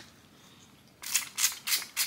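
A trigger spray bottle misting hair in quick spritzes: about four short hissing bursts in the second half, after a near-silent first second.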